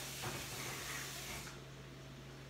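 Quiet room tone: a steady low hum under a faint hiss, the hiss thinning about one and a half seconds in.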